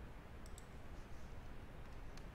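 Two faint clicks about half a second in from a computer pointing device, as a new drawing colour is picked, over a low steady background hum.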